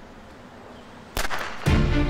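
A single sharp pistol shot about a second in, ringing on briefly, followed by a second hit as loud dramatic background music with sustained tones comes in near the end.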